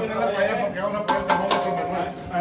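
Men talking in the background, with three quick sharp clinks of hard objects a little over a second in, the last one leaving a brief ringing tone.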